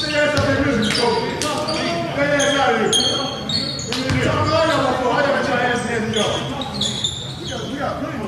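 Several men shouting trash talk over one another in a gym, with a few sharp knocks among the voices.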